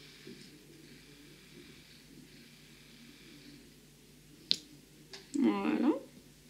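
Small sharp clicks of diamond-painting work: a single loud click about four and a half seconds in and a few fainter ones, over a faint background. A brief burst of voice comes near the end.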